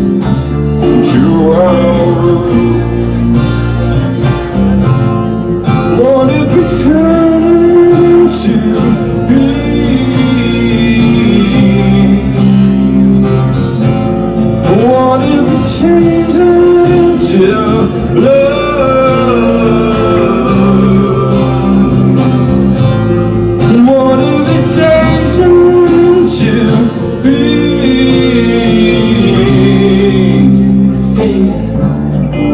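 Live band playing: a man singing into the microphone over strummed acoustic guitar and electric bass.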